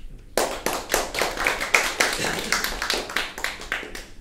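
A small audience clapping, with individual claps audible. The applause starts about a third of a second in and stops just before the end.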